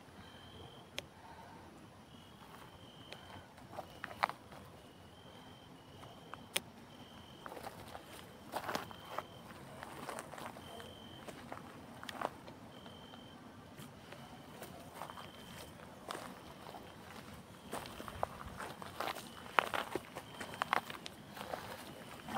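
Footsteps crunching on a dry dirt and gravel track, uneven and growing louder in the second half. A faint, short, high note repeats every second or so through much of it.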